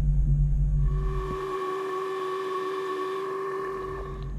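2000 Mustang GT's V8 idling with a steady low rumble through a Flowmaster 40 exhaust. The rumble fades out about a second and a half in, under a steady electronic tone that holds until near the end.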